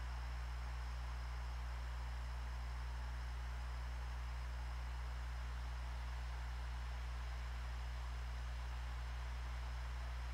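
Steady low electrical hum with a faint hiss underneath; nothing else happens.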